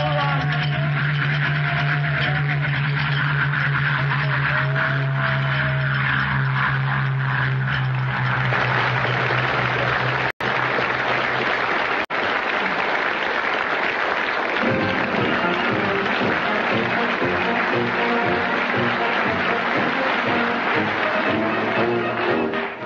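Sound effect of aeroplane engines droning overhead as planes take off, giving way after about eight seconds to studio-audience applause. About fifteen seconds in, the closing theme music starts over the applause.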